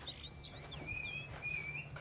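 Small caged songbirds chirping and whistling: a quick run of short, high calls, several sliding up or down in pitch, over a faint steady low hum.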